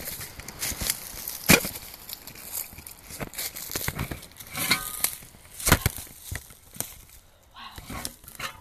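Handling noise of a phone being moved against cloth: rustling and crackling with irregular sharp knocks, the loudest about a second and a half in and just before six seconds.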